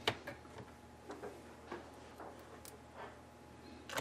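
Faint, scattered light clicks and ticks from a screwdriver and hands on a laptop's plastic case as small screws are driven in.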